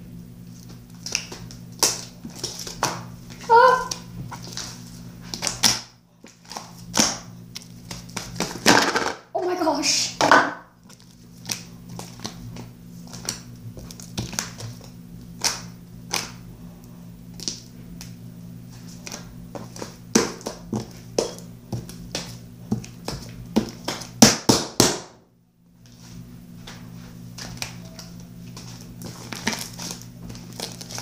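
Hands squishing, stretching and slapping a soft, jiggly slime, making many short wet clicks and small pops. The slime is stretchy rather than one that pops loudly.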